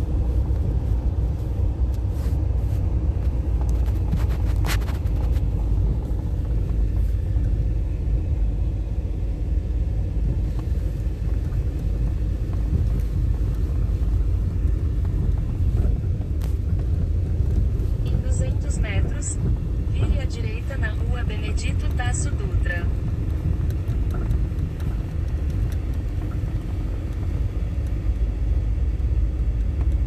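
Steady low rumble of a car driving slowly, heard from inside the cabin. Faint voices come in briefly past the middle.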